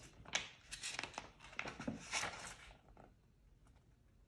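Paper pages of a picture book rustling and crinkling as a page is turned by hand, a run of crisp crackles that stops about three seconds in.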